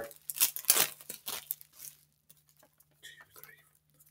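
Wrapping crinkling and rustling in a run of irregular crackles through the first two seconds as a package is unwrapped by hand, then quieter handling.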